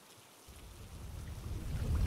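Low rumbling background ambience, like wind, fading in about half a second in and swelling steadily.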